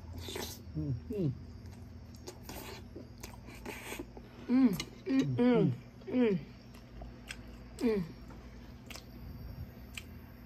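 Eating sounds: chewing and sharp clicks of spoons and bites, with short 'mm' hums of enjoyment that fall in pitch, several in a row around the middle and one more near the end.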